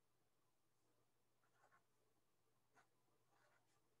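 Near silence, with a few faint scratchy strokes of writing on paper from about one and a half seconds in.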